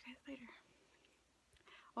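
One softly spoken word, then near silence: room tone.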